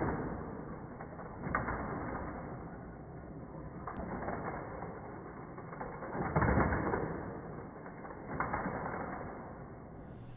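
Hot Wheels Criss Cross Crash track running: its battery-powered booster whirring and die-cast cars rattling along the plastic track. The sound is muffled and steady, swelling about a second and a half in and again, louder, past the middle, with a couple of sharp clicks.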